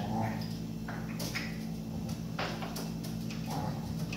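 Chopi blackbirds (pássaro-preto) giving a few short, sharp calls, the clearest about a second in and again near the middle, over a steady low hum.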